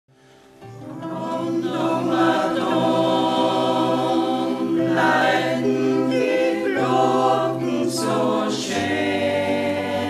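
Mixed choir singing an Austrian folk song in sustained, held chords, accompanied by a concert zither. The sound fades in over the first second.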